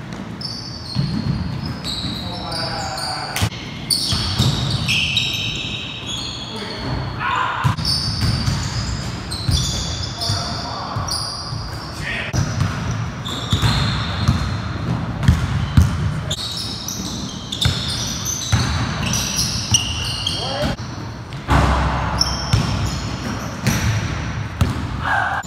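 Basketball bouncing on a hardwood gym floor, with many short, high sneaker squeaks and players' voices calling out during play. There are scattered sharp knocks, the loudest about 22 seconds in.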